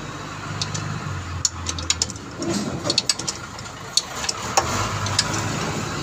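Steady low hum of an engine idling, with scattered sharp metallic clicks from a hand wrench working the bolts of a clutch pressure plate.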